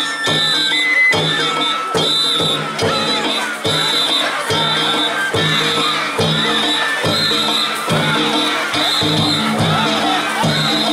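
Danjiri festival music played on the float, drum beats and ringing gongs in a steady, quick rhythm, over a crowd shouting.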